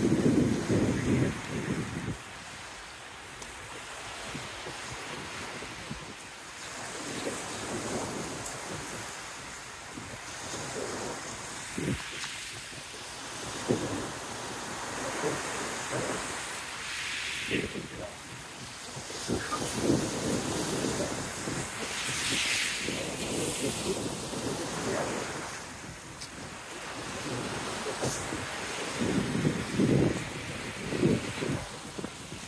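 Sea waves breaking and washing up a pebble beach, swelling and ebbing every few seconds. Wind buffets the microphone at the start and again near the end.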